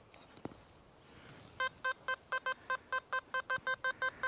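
XP Deus metal detector giving a repeated target signal: short beeps of one steady pitch, about four a second, starting about a second and a half in as the coil passes back and forth over a buried target that reads 82–83.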